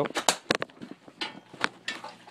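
A run of sharp, irregular knocks and clunks: hard objects being bumped and shifted by hand.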